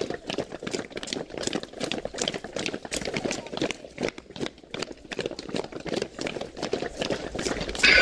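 Footsteps of a large group walking briskly on a paved street: a dense, irregular stream of many shoe strikes.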